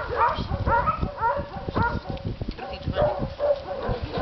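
A dog barking in a quick run of short barks, most of them in the first two seconds.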